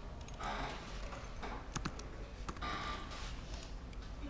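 Computer keyboard keys clicking as a search term is typed: a few scattered sharp clicks, with two brief soft rustles between them.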